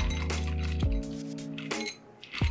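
Ice cubes clinking as they tumble out of a glass pitcher into stemmed glasses: a run of quick, bright clinks, heard over background music.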